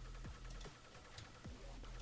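A few faint clicks from working a computer's mouse and keys, over a low steady hum.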